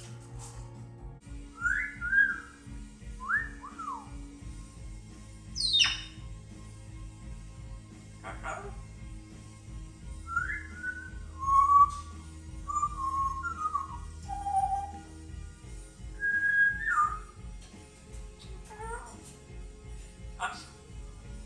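A parrot whistling a scattered run of short notes, some gliding up and some down, with one sharp falling whistle about six seconds in.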